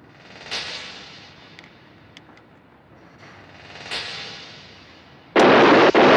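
A loud, sustained burst of rifle fire breaks out about five and a half seconds in. Before it come two swelling, fading washes of sound.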